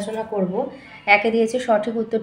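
Only speech: a woman reading aloud in Bengali.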